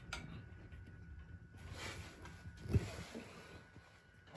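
Quiet low background hum, with one soft knock a little before three seconds in as a hand handles the boiler's Honeywell aquastat control.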